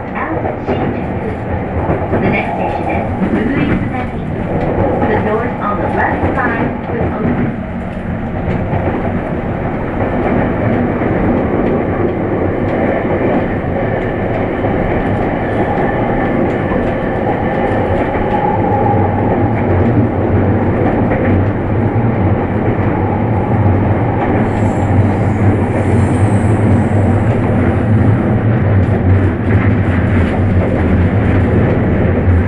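Running noise of a JR East E231-500 series commuter train at speed, heard from inside the carriage: a steady rumble of wheels on rail with some clicking over rail joints. A deep drone grows stronger in the second half.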